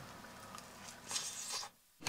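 Faint biting and chewing of a Hot Pocket in its paper sleeve, over low room tone, with a little rustle about a second in; the sound cuts off abruptly shortly before the end.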